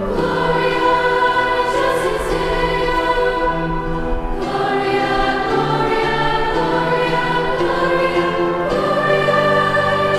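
A large choir of young women's voices singing slowly in harmony, holding long chords that change about four and a half seconds in and again near the end.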